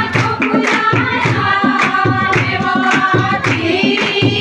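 Group of women singing a Hindi devotional song to the Mother goddess, with steady rhythmic hand clapping, about three to four claps a second.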